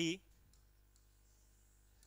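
A few faint clicks and taps of a stylus on an interactive smart-board screen as handwriting is traced, following a short spoken word at the very start.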